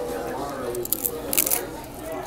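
A mouthful of crisp nacho chips and wonton chips crunching as they are bitten and chewed, a few sharp crunches about a second in, over background voices.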